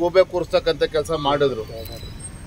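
A man speaking into close microphones. His voice falls in pitch and trails off about three-quarters of the way through, leaving quieter background.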